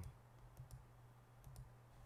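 Near silence: a low steady hum with a few faint, scattered clicks.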